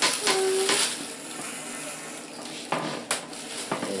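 Corded electric hair clipper fitted with a number-two guard, buzzing steadily as it shaves a toddler's hair short on top, with a couple of sharp clicks about three seconds in.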